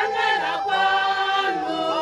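A group of mostly women singing together unaccompanied, in harmony, with long held notes.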